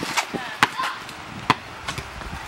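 A ball hitting the concrete pavement: two sharp smacks about a second apart, with a fainter one near the end.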